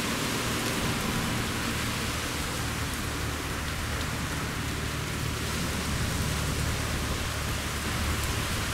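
Steady rushing noise of wind on the microphone mixed with surf breaking on the beach, with a low rumble and no distinct events.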